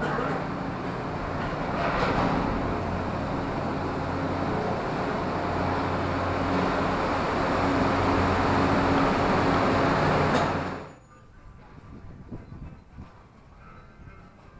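Cable car station machinery running: a loud, steady mechanical rumble with a low hum in it. It cuts off suddenly about eleven seconds in, leaving quieter rustling and clicks.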